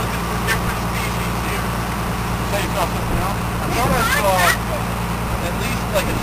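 Boat engine running steadily, a low even drone. Children's voices break in briefly about four seconds in.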